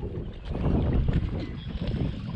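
Wind buffeting the microphone outdoors: an uneven, low rumble with no clear tones.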